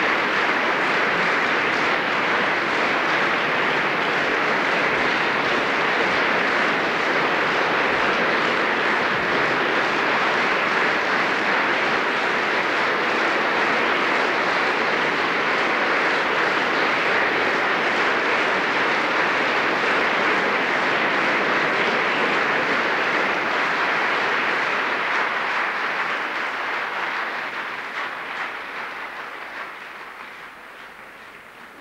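Concert-hall audience applauding steadily, the clapping dying away over the last few seconds.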